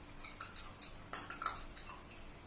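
Light clinking of kitchenware: a quick run of small clicks and clinks, loudest about a second and a half in.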